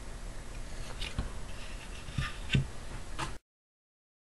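Faint handling noise of hands working a RAMPS electronics board on its mounting plate, with a few light clicks and knocks about a second in and again past two seconds. The sound cuts off abruptly to dead silence near the end.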